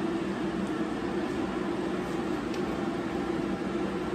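A steady mechanical hum with fan-like rushing noise, unchanging throughout.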